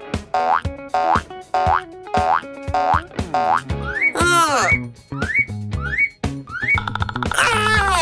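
Cartoon soundtrack music over a steady bass beat, laced with quick upward-swooping sound effects about every half second. About four seconds in and again near the end comes a longer wavering swoop that bends up and then down.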